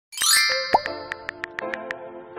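Channel intro jingle: a rising sparkly chime sweep, a pop sound effect just under a second in, then light electronic music with a quick ticking beat.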